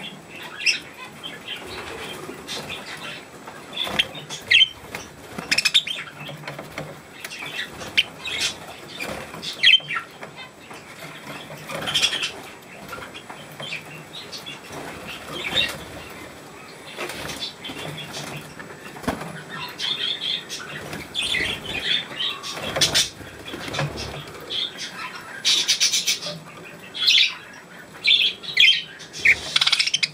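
Caged budgerigars fluttering their wings, with short chirps and sharp little clicks scattered irregularly throughout.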